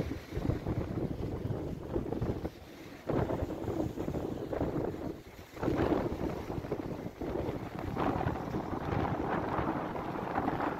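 Wind buffeting the microphone in uneven gusts, dropping briefly about two and a half seconds in and again around five and a half seconds, with waves on the shore behind it.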